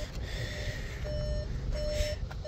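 A 2019 Volkswagen Atlas's in-cabin warning chime beeping repeatedly, with the driver's door standing open: a short single-pitched tone about one and a half times a second.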